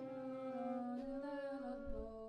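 Large improvising ensemble holding quiet sustained notes at several pitches at once. The lowest note sags slightly and comes back up, the upper notes shift in small steps in the second half, and there is a brief low thump near the end.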